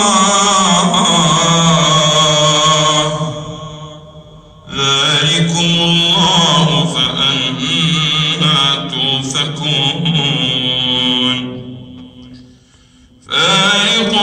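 A man reciting the Quran in melodic tajweed style through a microphone and loudspeakers: two long, drawn-out phrases, each fading away into a short breath pause, one about four seconds in and the other about twelve seconds in.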